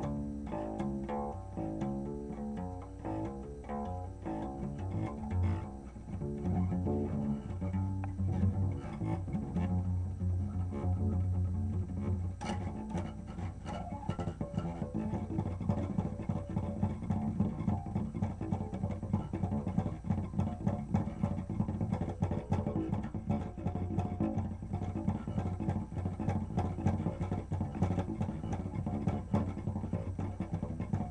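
Acoustic guitar played solo, plucked with strong low notes: separate picked notes in the first half, then fast, even repeated picking through the second half.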